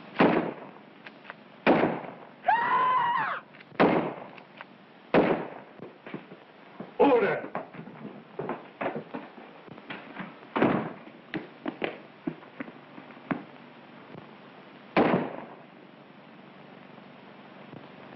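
Gunfire in an old film soundtrack: rifle and pistol shots cracking out one at a time at uneven intervals, about seven loud shots with smaller pops between them, each trailing off in a short echo. The shooting stops after about fifteen seconds.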